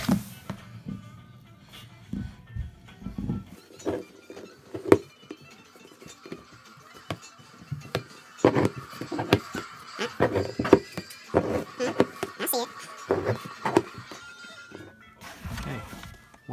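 Knife point and scissors being forced and twisted through the wall of a thin plastic bin to punch air holes: a run of sharp cracks, clicks and plastic squeaks. Background music plays underneath.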